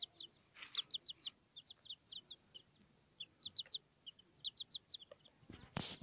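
Young chicks peeping: short high peeps, each dropping in pitch, in quick runs of two to four. A brief burst of rustling noise just before the end.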